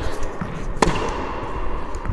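A single sharp tennis-ball impact about a second in, with a short echo off the walls of an indoor tennis hall.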